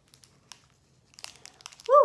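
Foil wrapper of a Pokémon trading card booster pack crinkling in the fingers as its top edge is worked at: a few faint, scattered crackles.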